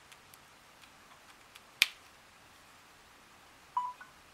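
A charging cable's plug clicking into a Samsung phone's socket: a few faint ticks, then one sharp click a little under two seconds in. Near the end the phone gives a short single-tone beep as it starts charging.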